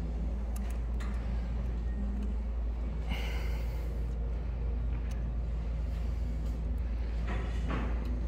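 Faint metallic clicks and scraping of an allen key working a bolt on a CNC router's mounting bracket, tightening it to lock the mount, over a steady low background hum.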